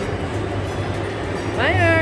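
Steady low rumble and hum of an indoor amusement park's rides and machinery, with a voice starting to speak about one and a half seconds in.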